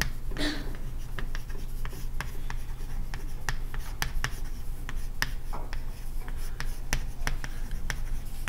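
Chalk writing on a blackboard: an irregular run of sharp taps and short scratches as the chalk strikes and drags across the slate, over a steady low hum.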